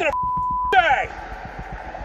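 A steady single-pitch censor bleep, about half a second long, blanking out a swear word at the start. A shouted word follows, over steady background noise.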